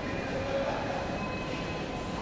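Metro train running in the station: a steady rumble with faint thin high tones over it.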